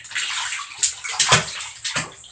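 Bathtub water splashing irregularly as a baby raccoon is held and washed by hand, with two sharper splashes in the second half.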